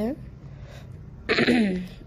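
A person clearing their throat once, about a second and a half in: a short, rough burst that slides down in pitch.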